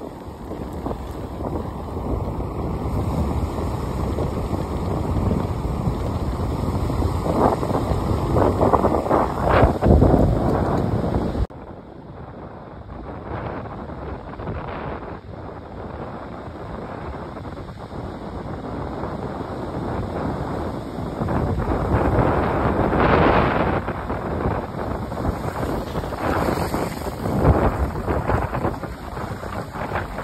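Wind buffeting the microphone over the wash of small waves running up and back over wet sand. The noise drops suddenly about a third of the way in, then builds again, with surges of wash near the end.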